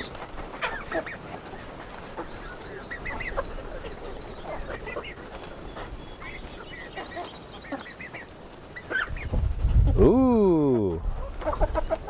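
A flock of chickens feeding, giving many short soft clucks and peeps. About ten seconds in, a louder drawn-out call with a steeply falling pitch stands out over them.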